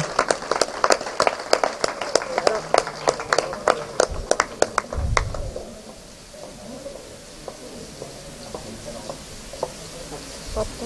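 Applause from a small group of people, the separate hand claps clearly distinct, dying away about five and a half seconds in. A low thump comes about five seconds in.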